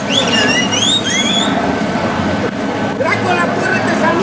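Voices of people on a busy street over steady traffic noise, with a few high, gliding whistle-like calls in the first second and a half.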